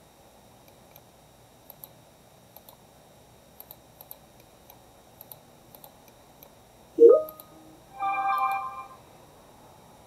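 Faint computer mouse clicks spaced through a low room hiss while objects are being selected. About seven seconds in, a short rising electronic tone, then a chime of several held notes lasting under a second: a notification sound.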